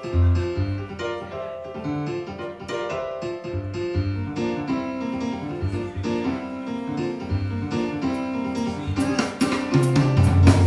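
Live jazz band: electric keyboard playing chords and melody over an electric bass line, with drums and cymbals coming in near the end.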